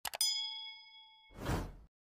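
Subscribe-button animation sound effects: two quick mouse clicks, then a bell ding ringing out for about a second, and a short whoosh near the end.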